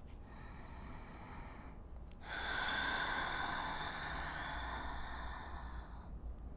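A woman's breathing: a soft inhale through the nose, then a long, audible exhale out of the mouth that starts about two seconds in.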